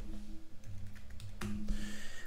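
Computer keyboard typing: a short run of separate key clicks as a word is entered, over a faint steady low hum.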